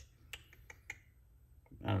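A few faint, sharp clicks spread over the first second or so, from a small folding knife being fiddled with in the hand.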